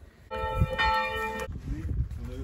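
Church bell ringing: a stroke about a third of a second in and a stronger second stroke about half a second later, its steady ring cut off abruptly after about a second.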